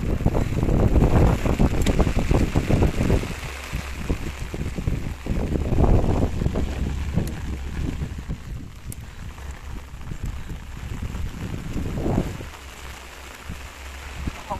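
Rain falling with gusts of wind buffeting the microphone, the gusts strongest in the first few seconds and again around six and twelve seconds in.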